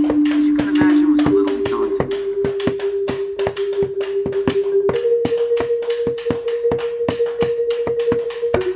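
Percussion ensemble music: sharp, evenly spaced taps about four or five a second, played on a tabletop with the hands and on the floor with a stick, over a single held note that steps up in pitch twice.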